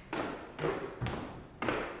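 A woman coughing four times in quick succession, about half a second apart.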